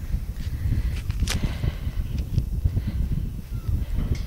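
Footsteps of someone walking, under a low, uneven rumble, with a sharp click a little over a second in.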